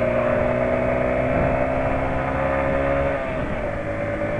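Small motorcycle engine running steadily at highway cruising speed, heard from on the bike. Its note eases slightly lower, then shifts about three seconds in.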